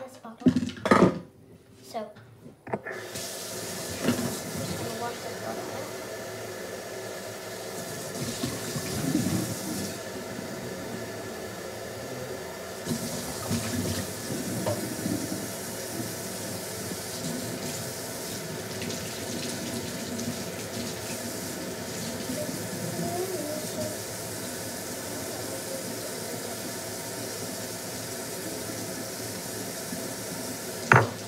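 Water tap running steadily into a sink, turned on about three seconds in.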